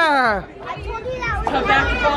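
Children's voices and chatter, opening with a high voice calling out, its pitch falling.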